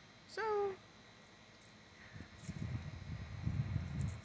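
A single short animal call about half a second in, falling in pitch, followed by low rustling.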